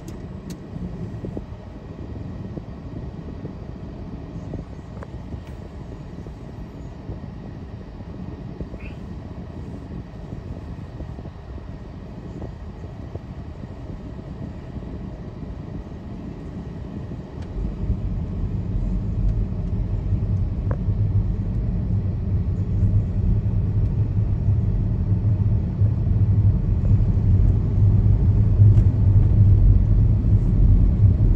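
A vehicle on the move, a steady low road and engine rumble that grows louder and heavier a little past halfway and keeps building toward the end.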